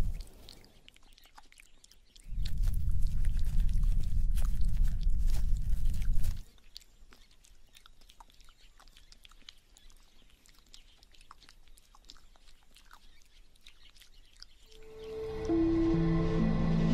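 Red kangaroo licking inside her pouch: a run of small wet clicks and smacks. About two seconds in, a low rumble sets in and stops suddenly some four seconds later, and music begins near the end.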